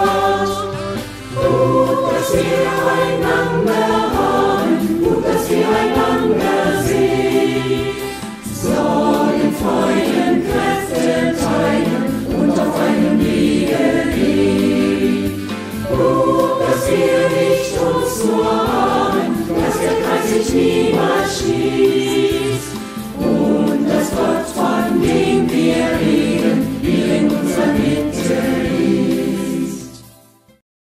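Mixed choir of men's and women's voices singing a German church song in phrases of several seconds with brief breaths between them, the music stopping at the very end.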